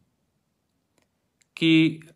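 Near silence for about a second and a half, broken only by a couple of faint clicks, then a man's voice says a single short word near the end.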